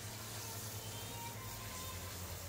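Water hissing steadily from a handheld shower sprayer onto wet hair in a shampoo basin, heard under soft background music.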